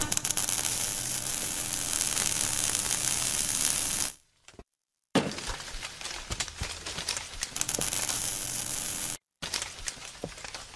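Intro sound effect of crackling and sizzling, thick with small sharp clicks, that starts suddenly. It cuts out for about a second partway through, starts again, and drops out briefly once more near the end.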